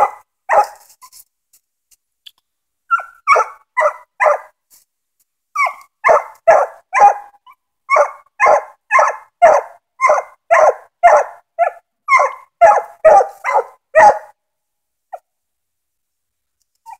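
Five-month-old English coonhound pup barking treed: short, sharp chop barks aimed up a tree, signalling that she has a raccoon treed. A few scattered barks open, then a steady run of about two barks a second that stops a couple of seconds before the end.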